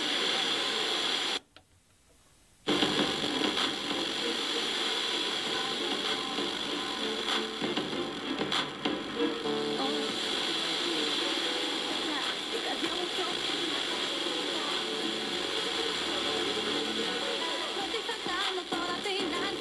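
A distant FM station received over sporadic-E on a tuner: a broadcast voice and some music coming through noise. The audio cuts out for about a second near the start.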